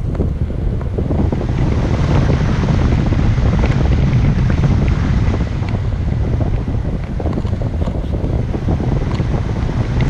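Airflow buffeting a handheld action camera's microphone in flight under a paraglider: a loud, steady, low wind rumble with occasional faint ticks.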